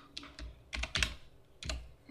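Typing on a computer keyboard: a handful of separate keystrokes at an uneven pace.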